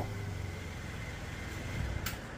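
Hyundai Santa Fe SUV idling at a standstill: a low, steady engine hum.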